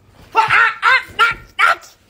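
Doberman barking four times in quick succession, loud and sharp.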